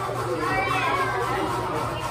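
Children chattering and calling out at their tables, with one child's high voice rising over the hubbub about half a second in, over a steady low hum.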